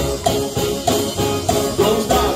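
Live band playing afro-fusion reggae: drum kit and bass under guitar and keyboard, with evenly repeated chord strokes on a steady beat.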